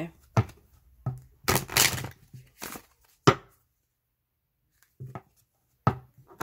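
A deck of oracle cards being taken up and handled on a table: a handful of sharp taps and knocks, with short rustling bursts of cards being shuffled.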